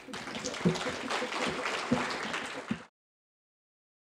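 Conference audience applauding at the end of a talk, a dense patter of many hands clapping that cuts off abruptly a little under three seconds in.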